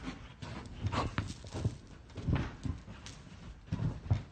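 A golden retriever romping on a fabric sofa: irregular soft thuds of its paws and body landing on the cushions, with its panting.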